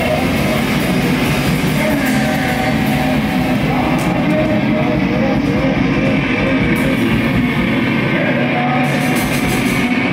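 Loud rock music.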